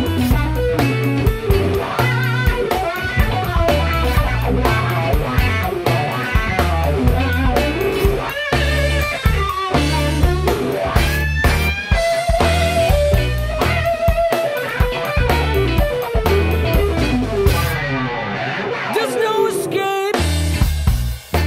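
Blues-rock band recording in an instrumental section: an electric guitar solo with bent, wavering notes over bass and drums. About eighteen seconds in, the band briefly drops out.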